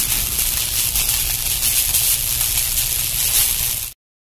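Outro sound effect of a logo animation: a steady hiss with a low rumble underneath, carrying on from the outro music, cut off abruptly just before the end.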